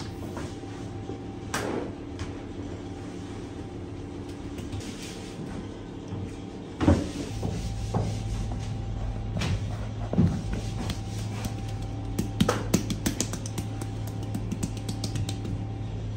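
Hands handling thin rolled dough rounds on a wooden worktable: soft rustles and a few sharp knocks, the loudest about seven seconds in, over a steady low hum.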